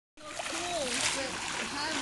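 Wave-pool water splashing and sloshing, with voices talking over it.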